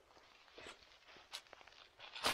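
Faint footsteps rustling through dry fallen leaves, two soft steps a little over half a second apart.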